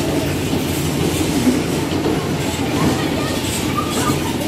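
Electric bumper cars (dodgems) running on the arena's metal floor: a steady, loud rolling rumble of the cars' wheels and drive, with a faint voice or two over it.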